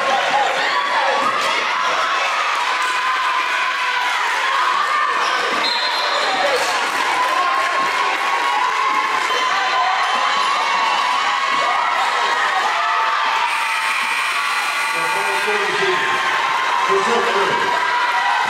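A basketball being dribbled on a hardwood court under a continuous noise of a cheering, shouting gym crowd.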